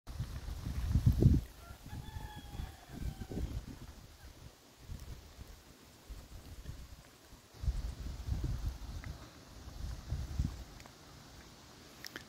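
Gusts of wind buffeting the microphone, loudest about a second in and again later on. A faint drawn-out rooster crow comes in about a second and a half in and lasts about two seconds.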